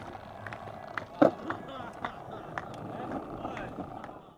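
Skateboard on concrete: wheels rolling with a loud clack a little after a second in and a few lighter knocks later, with faint voices in the background.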